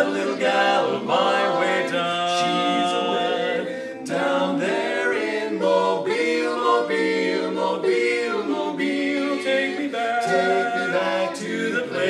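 Male vocal quartet singing a cappella in close four-part harmony, with a brief dip in level about four seconds in.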